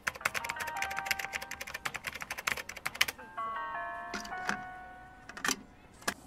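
Rapid keyboard-typing clicks, a sound effect for on-screen text being typed, over a few held music notes. The clicks stop about three seconds in, leaving the notes and a couple of lone clicks.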